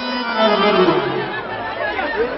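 A performer's voice drawn out in one long call that slides steadily down in pitch, over the steady drone of a harmonium.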